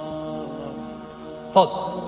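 Steady droning background music: a sustained chord of held tones. A man's speaking voice breaks in briefly near the end.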